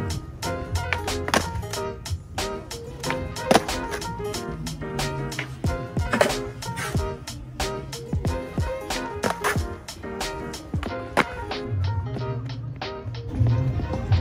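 Music with a beat over skateboard sounds: a skateboard's wheels rolling on a hard tennis-court surface, with the board clacking on the ground during flatground trick attempts.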